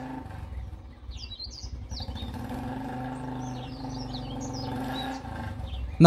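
A motorcycle engine runs steadily at cruising speed while birds chirp over it. The engine hum fades out near the end.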